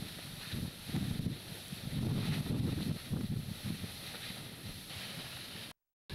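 Spattering natrocarbonatite lava at an erupting vent: irregular low rumbles and sloshing surges, over a steady faint hiss. The sound cuts out abruptly just before the end.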